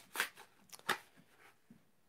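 Plastic blister pack on a cardboard backing card being torn open: a few sharp crackles and snaps of plastic and card, mostly in the first second.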